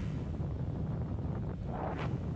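Steady low wind rumble on the microphone of a motorcycle riding along an open road.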